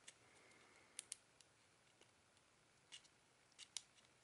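Near silence broken by a few faint, sharp clicks as fingers handle the phone's internal parts (flex-cable connectors and the motherboard): one at the start, a quick pair about a second in, and three more near the end.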